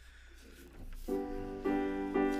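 Grand piano beginning a hymn introduction: after about a second of quiet, a sustained chord is struck, followed shortly by another.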